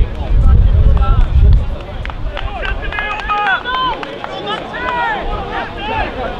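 Footballers' voices shouting calls to each other across the pitch, short sharp shouts coming thick from about two seconds in. The loudest part is a low rumble of wind buffeting the microphone in the first second and a half.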